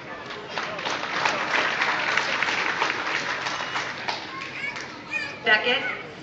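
Audience clapping for a few seconds, many hands at once, then dying away. A voice calls out loudly near the end.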